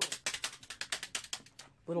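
A rapid series of sharp mechanical clicks, more than a dozen a second, spacing out slightly over about a second and a half before stopping.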